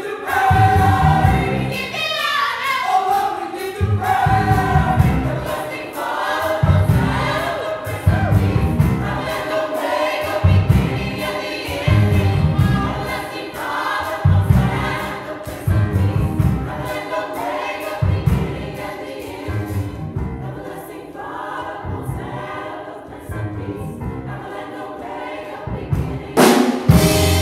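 Gospel choir singing with a low bass accompaniment in steady pulses; the singing grows thinner and quieter over the last few seconds.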